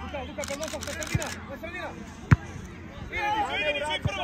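Voices shouting and calling across a youth football pitch, with one sharp thud a little past halfway that is the loudest sound.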